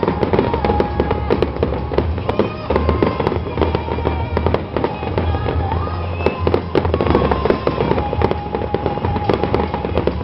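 Fireworks display going off continuously: a dense, rapid run of bangs and crackles from bursting aerial shells, with music playing underneath.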